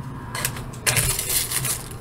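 Plastic candy wrappers crinkling and crackling as packaged sweets are handled, starting about a third of a second in.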